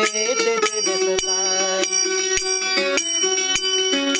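Mandolin played with a pick, giving bright, metallic, bell-like picked notes over a regular stroke about every 0.6 seconds. A man's singing voice ends about half a second in, leaving the instrument playing alone.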